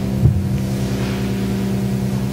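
A sustained low chord held steady as a quiet drone, with a soft thump shortly after the start.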